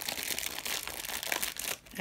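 Packaging crinkling and rustling as it is handled, with a few sharp crackles, fading out just before the end.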